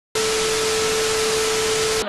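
TV static sound effect: a loud, steady hiss of white noise with a single steady mid-pitched tone running through it. It starts a moment in and cuts off abruptly.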